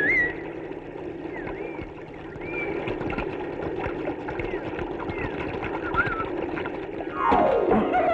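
Rushing river water runs steadily, with short rising-and-falling whistled chirps about once a second. Near the end a falling musical sweep leads into background music.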